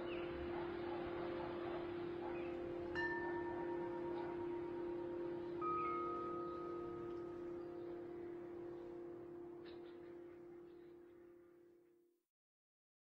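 Ambient background music: a sustained low drone with chimes struck now and then, two clear strikes about three and six seconds in, slowly fading out to silence at the end.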